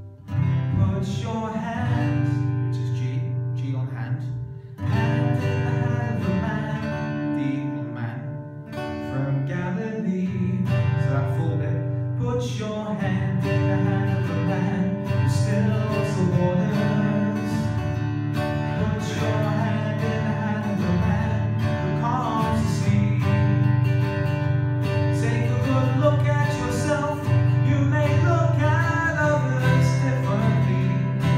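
Acoustic guitar strummed steadily, moving between C major and G major chords.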